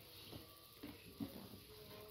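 Faint rustling of cloth and a few soft knocks as a toddler rummages in a clear plastic storage box of clothes.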